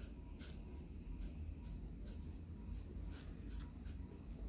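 Pigma MB brush-tip pen drawing quick strokes on paper: a run of short, scratchy swishes, about two or three a second, as long parallel hatching lines are laid down. A faint steady low hum lies underneath.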